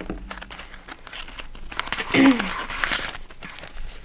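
Paper banknotes rustling and a plastic binder pocket crinkling as a stack of cash is pulled out and handled, in a quick irregular patter of rustles.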